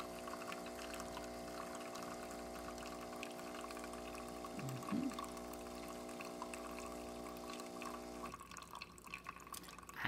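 De'Longhi Perfecta Cappuccino Touch espresso machine running a cappuccino cycle with water in place of milk. Its newly replaced pump hums steadily while water spatters from the frother spout into a steel pitcher. There is a brief louder burst about five seconds in, and the hum cuts off about eight seconds in.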